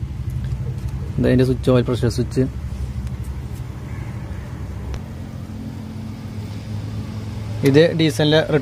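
A steady low mechanical hum, as of an engine running, holding even throughout.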